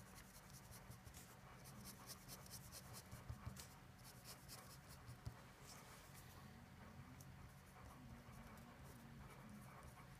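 A pen scratching on paper, faint: a run of quick short strokes as diagonal hatch lines are shaded under a graph, then slower strokes as a label is written.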